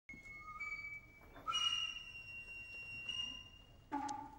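A Japanese bamboo flute in the hayashi ensemble plays long, shrill held notes. One note rises slightly about half a second in, then it leaps to a higher, louder note held for over two seconds. Just before the end, another instrument or voice comes in.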